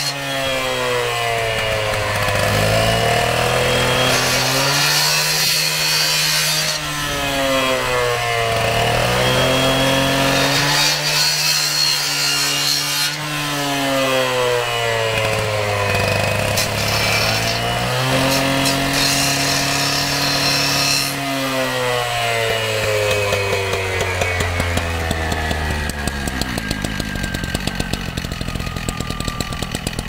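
Two-stroke Husqvarna gas cut-off saw cutting through thick-walled PVC pipe, the engine speed rising and falling about four times as the blade bites and is eased through the pipe wall. Near the end the cut is finished and the engine drops to a steady idle.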